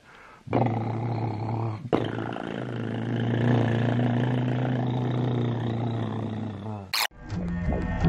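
A long, steady, low droning airplane-engine noise with a brief break about two seconds in. It cuts off suddenly near the end with a sharp click, and music starts.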